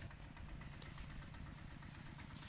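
Faint, steady low rumble with a light hiss: quiet outdoor field ambience.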